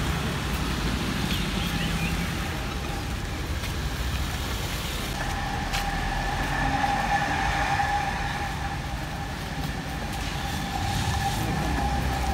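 Outdoor traffic noise, a steady low rumble of vehicles and engines. About five seconds in, a steady high-pitched tone starts and holds on.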